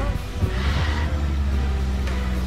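Land Rover Defender's engine running steadily at low revs, with music mixed in over it.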